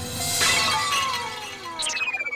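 Comic stinger sound effect over the background music: a glass-shattering crash about half a second in, followed by tones sliding down in pitch.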